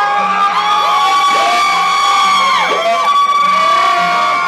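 Club crowd cheering and whooping, with long drawn-out high calls and falling whoops over the noise of the crowd.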